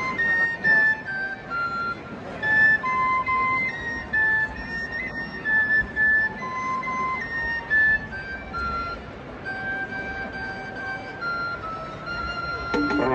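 A single high, flute-like wind instrument playing a slow melody of held notes, over low crowd noise.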